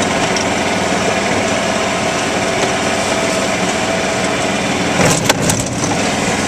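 Golf cart running steadily at about 12 mph on a wet path, its drive making a constant hum. A few short knocks come near the end.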